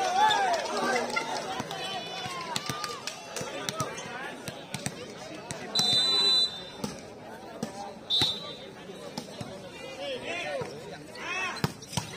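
Players and spectators shouting and calling out around an outdoor volleyball court between rallies, with short blasts of a referee's whistle about six seconds in and again about eight seconds in, and scattered knocks.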